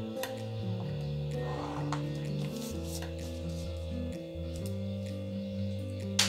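Background music of slow, sustained notes changing every second or so, with a faint rub about a second and a half in.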